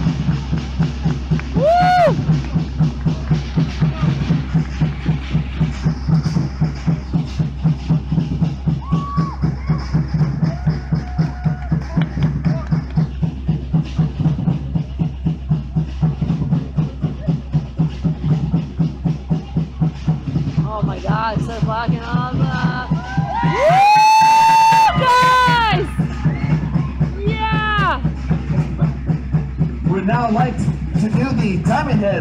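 Fast, steady drumming accompanying a Polynesian fire knife dance. A few seconds before the end, loud yelling and whooping rise over the drums, including one long held yell.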